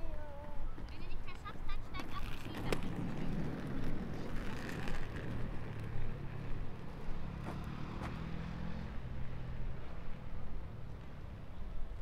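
Outdoor ambience of a low, steady rumble of road traffic, with a quick run of short high chirps in the first two seconds and a sharp click about three seconds in.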